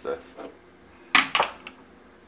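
Two sharp clinks about a second in, hard kitchen containers knocking together with a brief ringing, followed by a fainter third tap.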